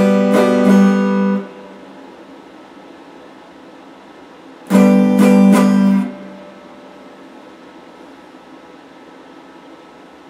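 Electric guitar strummed in two short bursts, about four seconds apart. Each burst is a few quick chord strokes that ring for about a second and are then cut off sharply, with a steady hiss in the gaps.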